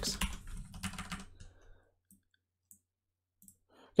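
Typing on a computer keyboard: a quick run of key clicks in the first second or so, then near silence with a few faint ticks.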